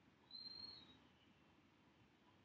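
Near silence, broken a little way in by a single short, high whistled note about half a second long that holds its pitch and dips slightly at the end.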